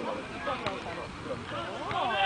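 Several voices of football players and onlookers calling and shouting over one another during play, swelling into louder shouts near the end.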